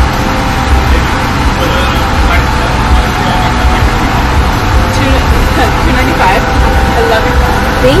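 Chevrolet pickup's engine idling, heard from inside the cab as a steady low rumble, with faint voices in the background.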